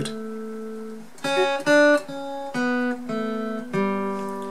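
Acoustic guitar, capoed at the second fret, picked slowly one note at a time: the open third string rings, then five more single notes follow, three in quick succession about a second in and two more spaced out, each left to ring.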